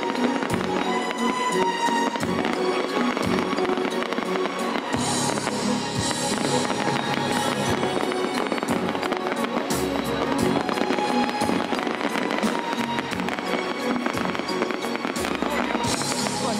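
Aerial fireworks bursting and crackling in a dense, unbroken barrage, over music.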